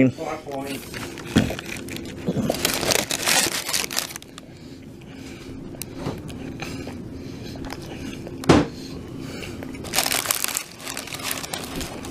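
Paper fast-food wrappers crinkling and rustling as a chalupa is unwrapped and handled, in two bouts, the first a few seconds in and the second near the end. Between them comes one short, sharp sound.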